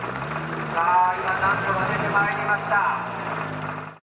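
People talking over a steady low background hum; the sound cuts off abruptly at the very end.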